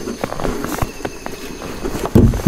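A few light clicks and knocks as a freshly netted fish and a gill net are handled in a small boat.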